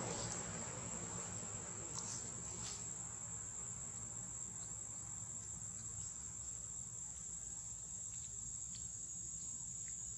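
Steady high-pitched insect drone, with a few faint ticks.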